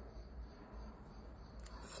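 Quiet handling of yarn and a crochet hook as stitches are worked, faint over a steady low room hum, with a small click near the end.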